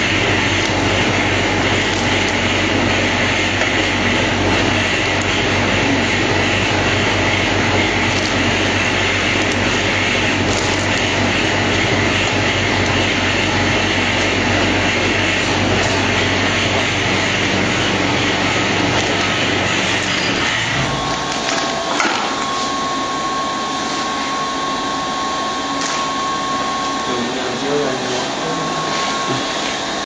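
Packaging machinery running: a loud, steady mechanical noise with a low hum and fast clicking. About twenty seconds in, the low hum stops abruptly, leaving a steady high tone and scattered clicks.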